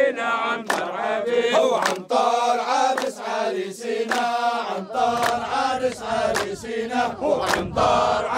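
A group of men chanting a traditional Arabic wedding song for the groom in unison, with hand clapping keeping the beat.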